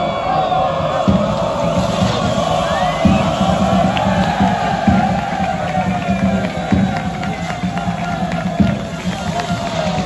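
A crowd of players and fans cheering and singing together over loud music, with low pulses about every two seconds.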